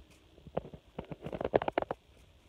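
Irregular crunching clicks of packed snow as someone crouched in it shifts and moves, thickest about a second and a half in.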